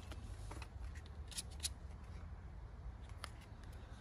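A self-adhesive 5000-grit sanding disc being peeled by hand off its paper backing sheet: faint, scattered crackles and rustles of paper and sticky backing, a few sharper ticks about a second and a half in, over a low steady background rumble.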